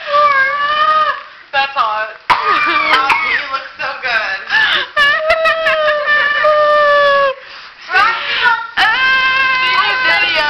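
Children's high-pitched, drawn-out squealing and crying-out in several long cries, one held about two seconds from about five seconds in.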